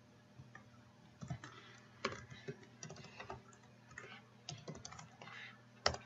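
Computer keyboard keys being typed in quick irregular strokes as a password is entered, with one louder key click near the end.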